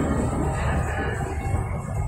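Background music, growing fainter, over a steady low rumble of indoor ambient noise.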